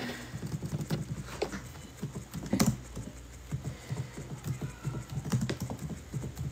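A series of soft, irregular taps and clicks close to the microphone, several a second, with no steady rhythm.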